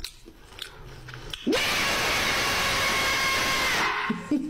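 A person chewing crunchy food with faint crunching clicks, then, about a second and a half in, a loud steady harsh noise that lasts over two seconds and cuts off suddenly near the end.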